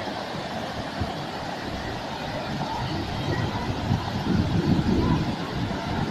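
Waterfall cascades pouring down a rock face, a steady rushing roar. Wind buffets the phone's microphone, adding a gusty low rumble that grows louder from about four to five and a half seconds in.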